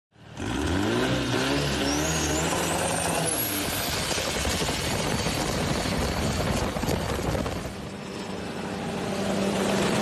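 A longtail boat's engine revs up hard, its pitch rising over the first few seconds, then runs flat out under a loud rush of noise. Near the end it settles to a steadier, farther-off drone as the boat speeds past.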